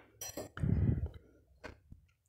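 A light clink about a quarter of a second in, a short low murmur after it, then a few faint isolated clicks, with near-silent gaps between them.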